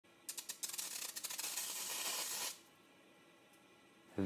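Water drops from a pipette hitting a very hot stainless steel frying pan, sizzling and crackling for about two seconds before stopping abruptly. The pan is far above water's boiling point, so the drops skitter on a cushion of their own steam instead of boiling away (the Leidenfrost effect).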